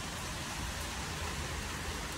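Steady rain falling, an even hiss with a low rumble beneath it.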